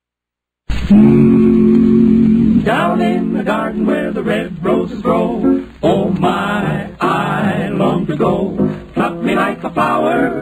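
Male barbershop vocal quartet singing in close harmony: after a moment of silence a chord is held for a couple of seconds, then the voices move on in a brisker passage of quickly changing notes.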